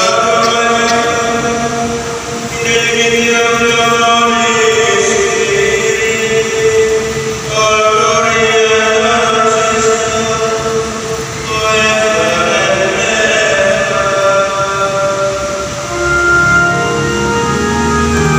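A hymn sung by choir and congregation with organ, in phrases a few seconds long with long held notes.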